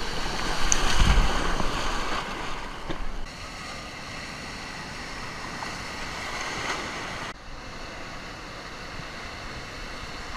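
Ocean surf breaking in the shallows: a loud rush with a low rumble about a second in as a wave breaks, then a steadier wash of whitewater. The rush changes abruptly twice.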